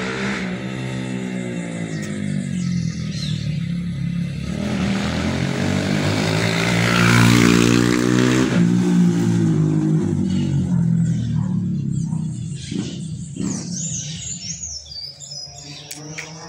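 A motor vehicle passing slowly along the street, its engine hum swelling to its loudest about seven seconds in and then fading away. Birds chirp briefly near the end.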